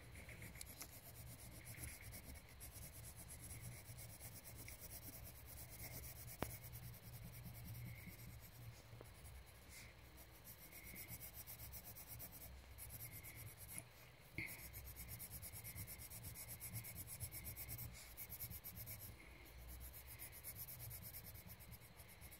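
Faint, steady scratching of colouring strokes on paper, over a low steady hum.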